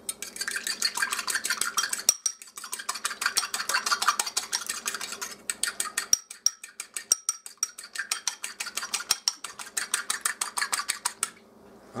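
An egg and a little water being beaten with a fork in a small bowl for an egg wash: a fast, steady clicking of the fork against the bowl, about ten strokes a second, with two brief pauses, stopping shortly before the end.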